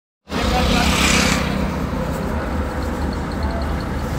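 Road vehicle engines running at low speed, a steady low rumble, with a louder pass-by swelling and fading in the first second and a half.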